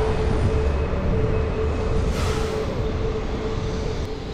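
City street traffic: a low engine rumble with a steady hum from a running vehicle, and a louder rush about two seconds in as traffic passes.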